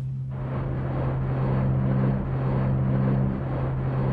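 A steady low hum with a rushing, rumbling noise that swells in about a third of a second in and holds; a second, higher note drops out and returns a couple of times over the hum.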